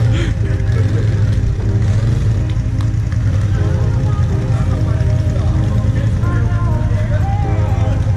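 Quad (ATV) engine running steadily in a mud hole, with music and voices over it.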